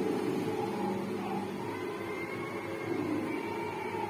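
Steady low-pitched background hum, even throughout.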